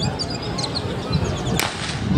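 A starting gun fires once, a single sharp crack about a second and a half in, starting a women's 100 m hurdles race from the blocks.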